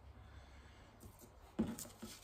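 Faint, quiet handling of paper inlay sheets over low room noise, with one short louder rustle-like sound about one and a half seconds in.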